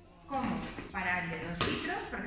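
A woman speaking Spanish in a steady demonstrating tone, with one brief sharp sound about one and a half seconds in.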